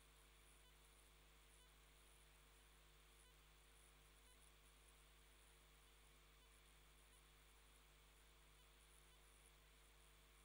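Near silence: a steady low electrical hum on the courtroom's audio feed, with a few very faint short high-pitched chirps in the first half.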